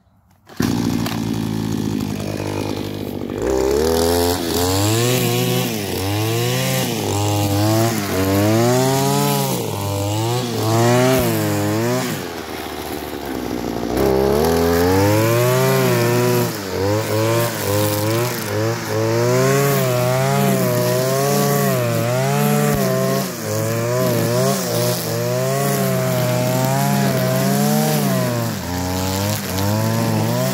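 Petrol string trimmer (whipper snipper) cutting long grass along a fence line. Its engine pitch keeps rising and falling as the throttle is worked and the line loads in the grass. It starts suddenly, eases off briefly before the middle and then picks back up.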